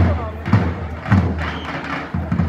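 Davul bass drum beating about twice a second, each stroke a deep thump that rings on.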